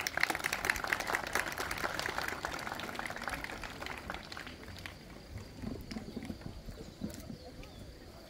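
Audience applauding, dying away over the first four seconds or so.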